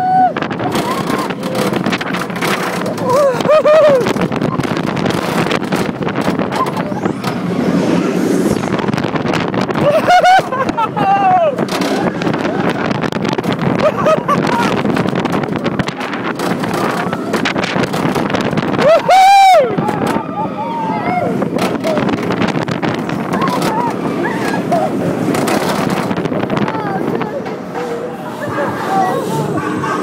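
Steel rollercoaster train of The Smiler, a Gerstlauer Infinity Coaster, running through its course: a steady rush of wind on the microphone and track noise, with riders screaming again and again, loudest about two-thirds of the way through.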